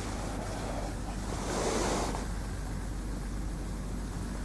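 Steady background hiss with a low hum, swelling softly into a brief rush about a second and a half in.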